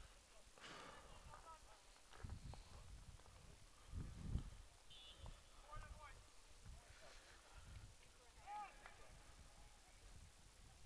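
Near silence on the field, with faint, distant shouts from soccer players and a soft low thump about four seconds in.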